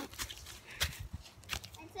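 Footsteps on dry leaf litter and twigs: a handful of irregular crunches and knocks.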